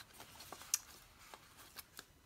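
A neighbour's leaf blower running faintly in the background, under light clicks and rustles of sticker sheets being handled; the loudest sound is a sharp click about three quarters of a second in.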